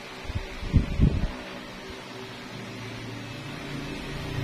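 Steady whirring hum of a small motor, like an electric fan, with a few low thumps in the first second or so.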